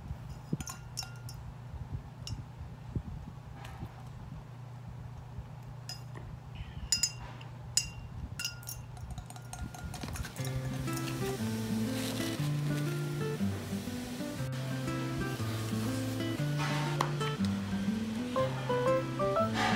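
A straw stirring coffee jelly in a tall drinking glass, knocking against the glass in a scattering of sharp, ringing clinks through the first half. Background music comes in about ten seconds in.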